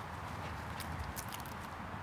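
Footsteps on grass as a person and two dogs walk, with a few faint light clicks about a second in, over steady outdoor background noise.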